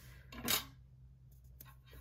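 A single short rub of a hand against a paper planner page about half a second in, then a few faint ticks over quiet room tone.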